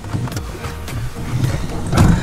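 Steady low rumble inside a car's cabin, with faint muffled murmuring and a louder sudden sound at the very end.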